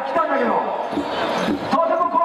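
A man's voice amplified through a microphone and PA, singing or chanting, with regular drum thuds about every half second beneath it.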